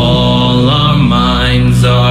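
Music from a song: long, held chant-like sung notes over a sustained backing, the pitch shifting twice.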